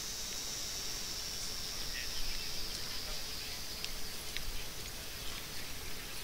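Outdoor insect chorus: a steady high-pitched drone that holds on one pitch, with a few faint ticks.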